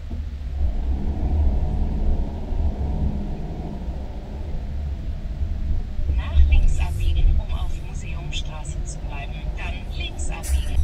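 Steady low engine and road rumble heard inside a motorhome's cab as it drives slowly, with indistinct voice-like sounds over it.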